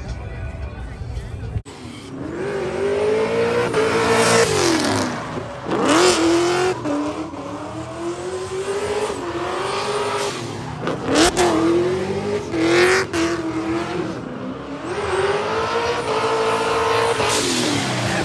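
After a second and a half of background music that cuts off abruptly, a drift car's engine revs hard, its pitch climbing and dropping again and again. Bursts of tyre squeal come as the car slides sideways.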